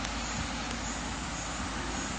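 Steady, even background hiss with nothing else in it, the noise floor of the recording.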